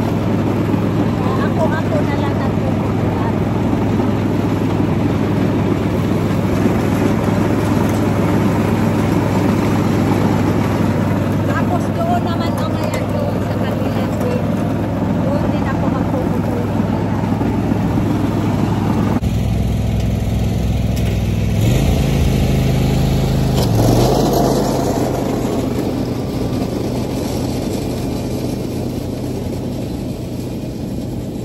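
Riding lawn mower engine running steadily while cutting grass, heard up close from the seat. About 19 s in it switches to the mower heard from farther off; its engine swells briefly a few seconds later, then fades as the mower moves away.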